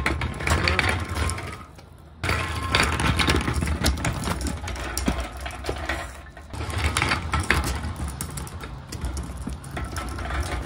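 Casters of an empty steel motorcycle dolly rolling under hand pushing over rough, pebbly concrete at a garage entry ramp. The rolling noise runs on with a short break about two seconds in and a dip past the middle.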